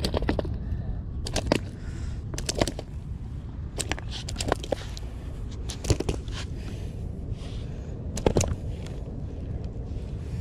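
Low steady rumble with irregular sharp taps and clicks of a freshly caught milkfish being handled on wet stone paving, loudest about six and eight seconds in.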